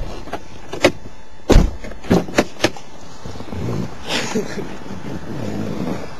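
A string of knocks and clunks inside a parked car as its occupants get out: a car door opening and people climbing out of their seats. The loudest knock comes about a second and a half in, followed by a quick cluster of smaller ones.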